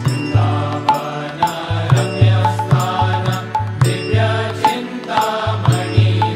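Devotional music with a chanted mantra over a regular low drum beat, about two beats a second.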